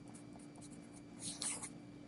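A pen scratching on paper as a short answer is written and circled: a few faint short strokes, then a louder, longer stroke about a second and a quarter in.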